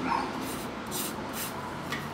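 A dog whimpering with short high whines, along with a few brief scraping strokes.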